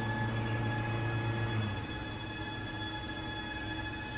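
Electric motor of an IKEA IDÅSEN adjustable standing desk lowering the desktop, a steady whine. A lower hum under it drops away after about two seconds.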